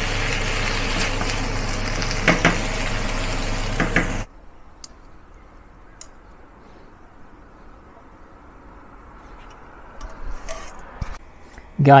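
Potato strips sizzling in a wok on an induction cooker while being stirred with a wooden spatula, with a few sharper scrapes against the pan. The sizzling cuts off suddenly about four seconds in, leaving a low hush with a few faint clicks and soft knocks near the end.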